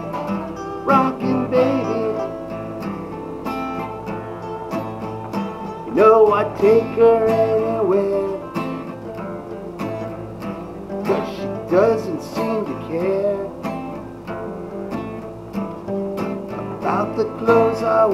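Live acoustic guitar music: a strummed acoustic guitar, with a voice gliding through sung phrases at times.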